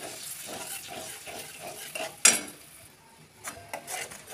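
Metal spatula stirring and scraping mustard paste around a metal kadai in hot oil, with a light sizzle. It gives one sharp clank against the pan about two seconds in, then a few quieter scrapes and taps.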